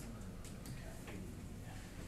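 A few faint, irregular taps of an interactive whiteboard pen working the board's menus, over a low room hum.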